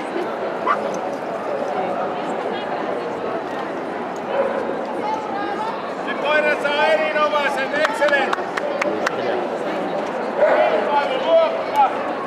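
Dogs barking and yipping over the steady chatter of a large crowd, with the loudest barks about halfway through and again near the end.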